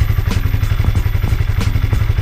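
Honda CB150R's single-cylinder engine idling steadily, with a few light ticks. The sound is smooth ('halus') after more than five months on 100% cooking oil used as engine oil, which the owner takes as a sign that the engine is still healthy.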